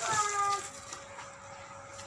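A single short high-pitched call at the very start, lasting about half a second and falling slightly in pitch; the rest is quiet background.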